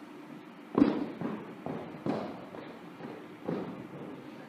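Several irregular knocks and thumps over a quiet background, the loudest about a second in.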